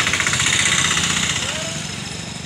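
An engine running with a rapid, even pulse, loudest in the first second and then fading.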